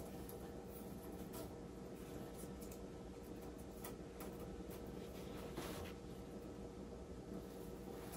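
Faint rustling and a few light clicks as a thin-wire fairy-light string is wrapped around a wooden post through pip-berry garland, over a steady low room hum.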